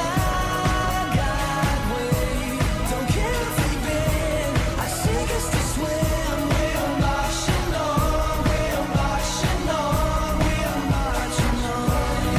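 Background music: a pop song with a sung melody over a steady drum beat.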